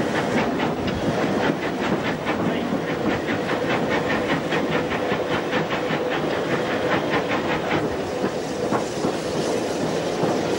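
North British Railway 0-6-0 steam locomotive running, heard from its footplate: a fast, even beat of about four strokes a second over a steady hiss of steam. The beat fades away near the end.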